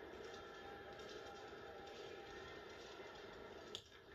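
Baseball game heard through a TV's speaker: low, steady stadium crowd noise, then a single sharp crack of the bat hitting the ball near the end.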